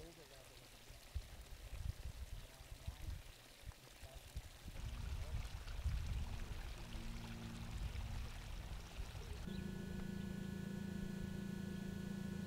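Irrigation water pouring from a pipe outlet into a ditch, low and noisy. Near the end a steady mechanical hum with several fixed tones comes in.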